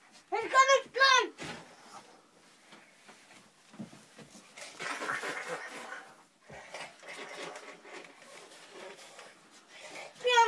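A young child's voice giving two short, loud, high-pitched cries in the first second and a half, followed by quieter scuffling, rustling and faint vocal sounds as children play-fight.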